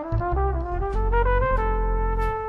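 Jazz band recording with a cornet lead. The cornet plays a rising run of short notes and then holds a longer note, over bass and drums.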